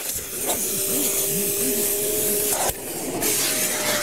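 Festool shop vacuum running with a steady whine and rush of air as its nozzle is drawn lightly over perforated leather upholstery, sucking leftover cleaner moisture out of the holes.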